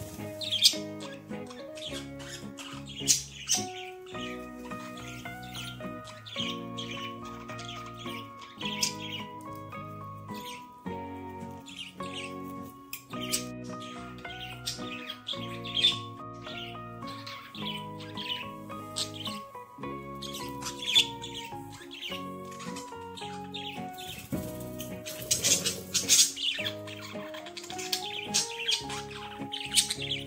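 Calm instrumental music, a slow melody of held notes, with budgerigars chirping and squawking over it in short, sharp calls that come thickest near the end.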